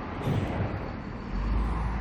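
Outdoor background noise with a low rumble that grows stronger about one and a half seconds in.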